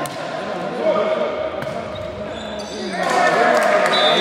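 Volleyball players shouting and calling to each other in an echoing sports hall, with the ball being hit during a rally. The shouting gets louder about three seconds in.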